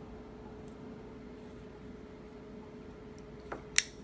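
Chris Reeve Sebenza 21 folding knife being handled over a faint steady hum, with a small click and then a sharp click near the end as the blade swings open toward its lockup.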